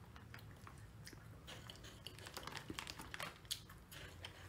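Faint, irregular crunching of crispy puffed snack balls being chewed in the mouth.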